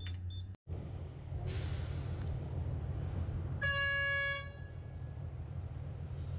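Steady low rumble of an asphalt mixing plant running, with a single horn blast about a second long midway through.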